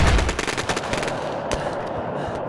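Rapid automatic gunfire, a dense run of shots that thins out about a second and a half in: a battle sound effect laid into the scene.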